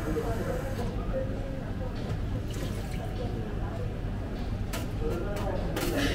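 Commercial espresso machine running as a shot of espresso drips and pours into a cup, with a steady low hum from the machine. A few light clicks come near the end.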